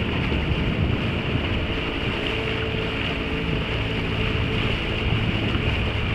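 A small motorboat running steadily under way, its engine a constant hum beneath wind buffeting the microphone and water rushing past the hull.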